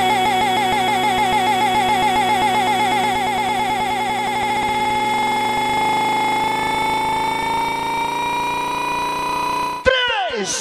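Sustained synthesizer chord with no beat, its pitch wobbling quickly at first, then the wobble slowing and settling into a steady held tone that drifts slightly upward. It cuts off suddenly just before the end, like a transition effect between tracks in a DJ mix.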